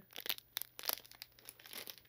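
Small clear plastic baggie crinkling as it is handled, in scattered, irregular crackles.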